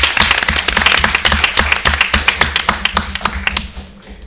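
Applause from a roomful of people, many hands clapping fast and unevenly, tapering off and stopping about three and a half seconds in.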